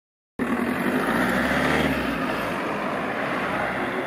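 A motor vehicle going by on the street, engine and road noise loudest in the first two seconds, then fading away.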